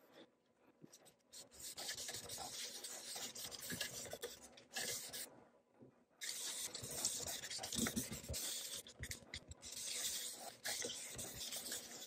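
A dye-soaked cloth rag rubbed over the wood of a quilted maple guitar body, a soft swishing scrub. It starts about a second and a half in, pauses briefly around five seconds, then goes on until near the end.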